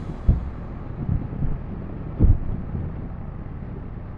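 Wind rushing over the microphone of a Kawasaki Dominar 400 motorcycle ridden at expressway speed, with a low rumble of engine and road underneath. Two louder low thumps come about a quarter second in and just after two seconds.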